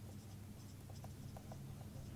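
Marker pen writing on a whiteboard: faint, short squeaks and scratches of the tip as the letters are drawn.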